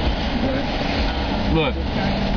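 Steady low rumble of a car heard from inside its cabin, engine and road noise running without change, with a single spoken word near the end.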